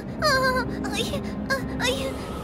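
A young cartoon character's high voice whimpering in several short, wavering wordless cries, with soft background music held underneath.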